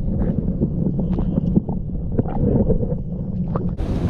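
Muffled underwater sound from a camera in its waterproof housing: a low steady rumble of water with scattered sharp clicks. Near the end it cuts to open-air wind noise on the microphone.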